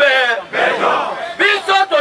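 A man shouting into a microphone through a loudspeaker, with a crowd shouting along partway through.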